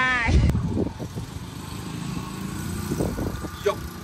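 A man's voice trails off in the first half second, ending in a click. A steady low engine hum from a motor vehicle follows, with a few brief voices near the end.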